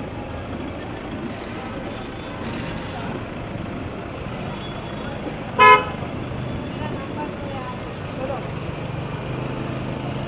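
A single short, loud car horn toot a little over halfway through, over steady street traffic noise and voices.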